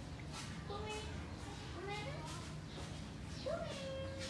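Young cats meowing: a run of short, high calls that slide up and down in pitch, the loudest a rising-then-falling meow about three and a half seconds in.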